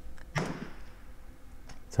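A single sharp metallic click from the rifle about a third of a second in, with a short ring after it: the hammer falling on an empty chamber because the bolt failed to pick up a round from the clip. A couple of faint handling clicks follow near the end.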